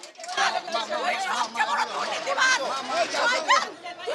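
Several people talking and shouting over one another, loud agitated overlapping voices.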